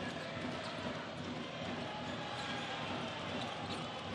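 Steady murmur of a basketball arena crowd, with a basketball being dribbled on the court during live play.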